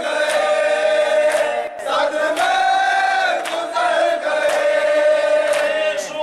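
A group of men chanting a noha, a mourning lament, in unison behind a reciter at a microphone. A sharp slap lands about once a second in time with it: hands beating on chests in matam.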